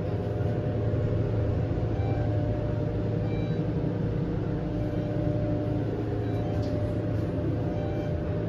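Westinghouse traction elevator car, modernized by Schindler, travelling down at speed, heard from inside the cab as a steady rumble with a low hum.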